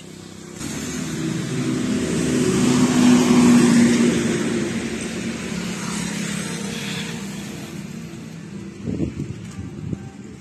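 A motor vehicle passing on the road: engine and tyre noise swelling to a peak about three to four seconds in, then slowly fading away.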